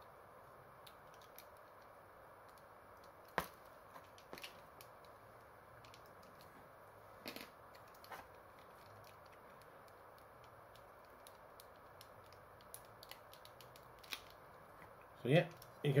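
Sparse small clicks and taps of a plastic action figure and its accessories being handled and posed, over faint room hiss. The sharpest click comes a little over three seconds in.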